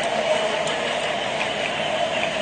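Steady hum of tennis-arena ambience, with a couple of faint taps of a tennis ball bounced on a hard court before a serve.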